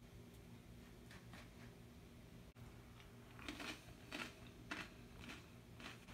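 Faint crunching of a tortilla chip being chewed, a few soft crunches with more of them in the second half, over near-silent room tone.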